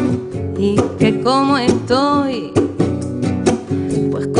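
Acoustic song performed live: a woman's voice singing a wordless, wavering line over a strummed nylon-string classical guitar, with hand-played bongos.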